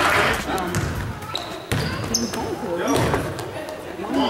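Game sounds of a youth basketball game in an echoing gym: a basketball bouncing on the hardwood floor, with scattered knocks and spectators' voices.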